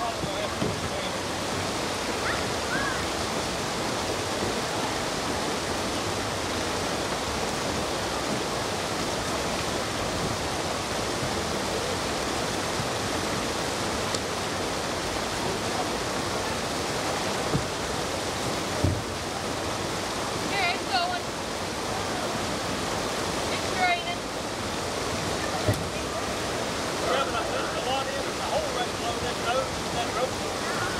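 Steady rush of a river pouring over a low rock ledge into whitewater, with faint voices calling now and then in the second half and a few dull knocks.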